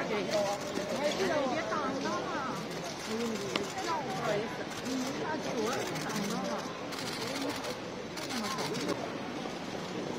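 Indistinct chatter of several overlapping voices, with no clear words.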